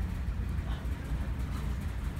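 Low, steady rumble of room noise with faint voices in the background.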